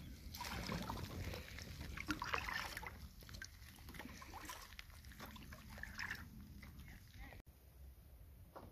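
Kayak paddle strokes dipping and splashing in calm water, with light sloshing around the hull; the sound breaks off suddenly near the end.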